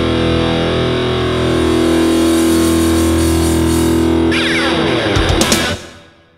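Closing seconds of an instrumental electric-guitar rock track: a held note rings steadily over the band, then a little over four seconds in the pitches sweep downward, a few sharp hits follow, and the music cuts off at the end.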